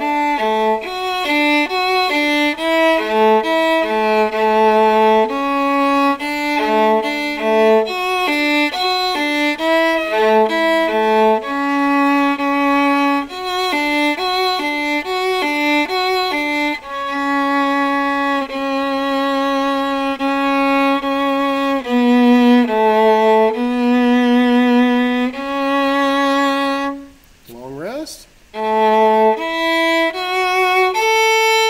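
Solo viola playing an orchestral part, first a run of short separate notes, then longer held notes with vibrato. A brief break comes near the end before the playing resumes.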